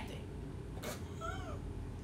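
A cat meowing once, faintly, about a second in: a single short call that rises and falls in pitch.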